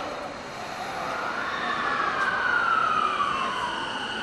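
JR East E233-7000 series electric train pulling away from the platform, its drive giving a whine that glides slowly downward in pitch and grows louder, over a steadier higher tone and the rumble of the moving cars.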